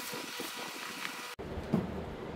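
Plastic bubble wrap crinkling and crackling as a boxed item is handled and pulled out of it. The crinkling cuts off abruptly past the middle, giving way to a low hum and a single thump near the end.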